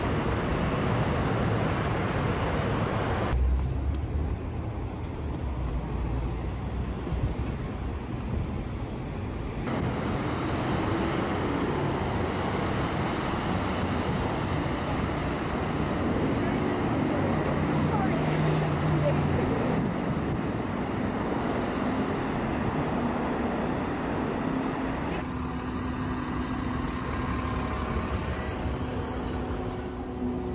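City street traffic noise, with cars and other vehicles running past. The sound changes abruptly a few times as the recording cuts between takes, and a steady low hum comes in over the last few seconds.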